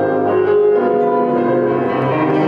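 Instrumental classical-style music with piano to the fore, playing held melodic notes.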